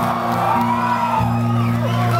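Amplified acoustic guitar played quietly, held chords ringing with a change about halfway, under scattered shouts and whoops from the audience.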